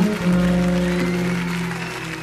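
Live jazz band playing on stage, with a low note held for about a second and a half.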